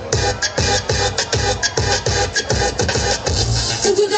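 Loud dance-mix music played for a dance routine, with a heavy bass drum beat about twice a second and sharp percussive hits over it.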